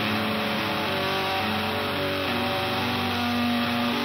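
Home-recorded rock song: distorted electric guitar holding long sustained notes that shift in pitch every second or so.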